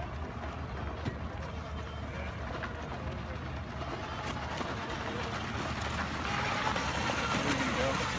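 Small youth ATV engine running steadily as the quad rides closer, its sound growing louder over the last couple of seconds.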